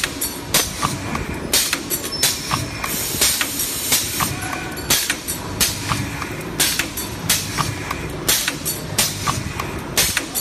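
Power punch press running a single stamping die: sharp metal punching strikes at a steady pace of about three every two seconds, over a continuous low rumble from the press.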